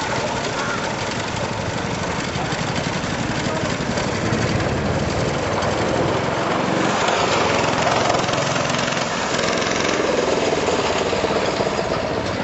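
Small go-kart engine running continuously as the kart drives along the track, a steady rapid buzzing rattle of engine pulses.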